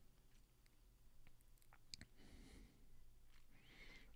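Near silence: room tone with a few faint clicks, the clearest about two seconds in.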